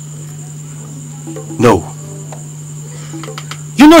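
Crickets trilling steadily as night ambience over a low steady hum, with a short murmured vocal sound about halfway through.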